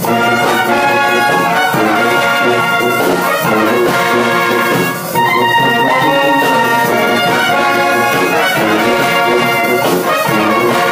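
A large brass band playing live, with trumpets, trombones, saxophones and sousaphones sounding sustained chords together. There is a brief break between phrases about five seconds in.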